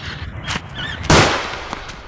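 A single loud gunshot about a second in, with a short ringing tail that dies away, preceded by a fainter sharp click.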